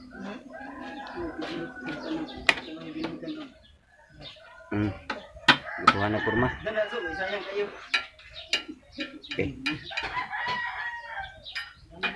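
A rooster crowing, the longest and loudest crow about five seconds in, among other chickens clucking, with scattered sharp small clicks throughout.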